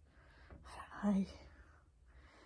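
A woman's voice, soft and half-whispered, saying "I don't know" about a second in.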